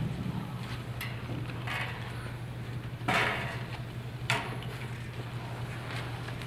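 Room noise before a performance: a steady low hum with a few brief rustles and knocks scattered through, the loudest about three seconds in. No singing or music.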